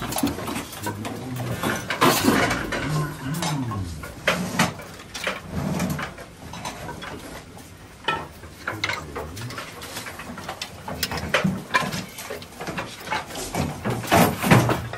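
Wooden boards and slats clattering and knocking against each other as they are handled and stacked: irregular sharp knocks, some in quick runs, with a few louder clacks.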